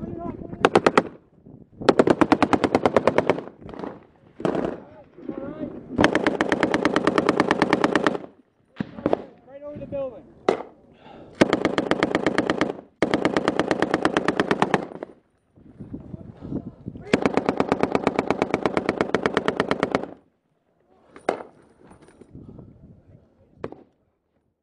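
Close, loud belt-fed machine gun fire in about five long bursts of rapid, evenly spaced shots, each lasting one to three seconds, with single shots between the bursts. The last long burst stops about twenty seconds in, and a few single shots follow.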